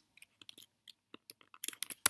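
Computer keyboard keys clicking: a few scattered keystrokes, then a quicker run of clicks near the end, as a line of code is copied and the cursor moved to a new line.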